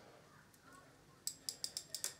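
Drag of a Jaxon Saltuna 550 spinning reel giving a few sharp, uneven clicks, starting a little past halfway. The line is being pulled off the spool by hand against a drag set almost fully tight, so it gives only grudgingly.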